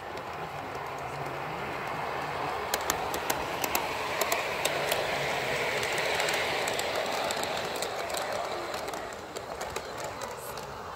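Garden-scale model diesel locomotive and its train of wagons and coaches running past on outdoor track: a rolling wheel-and-motor noise that builds and then fades, with a quick run of clicks over the rail joints as it passes closest.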